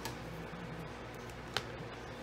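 Quiet room tone broken by a single sharp tap about a second and a half in, as a plastic glue bottle is set down on a cutting mat.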